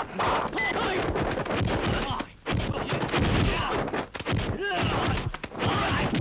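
Rapid run of dubbed kung fu film fight sound effects: quick punch and staff-strike impacts one after another, mixed with the fighters' shouts and grunts.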